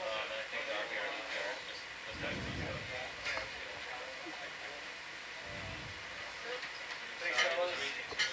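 Faint background voices over a steady hiss of control-room ambience, with two soft low rumbles, one about two seconds in and one near six seconds.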